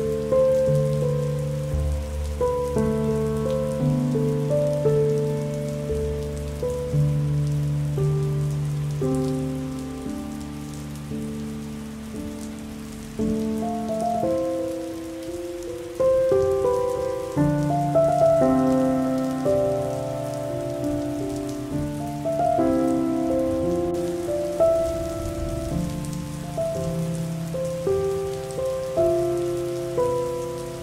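Steady rain falling on a surface, mixed with slow, soft melodic music whose notes strike and fade one after another.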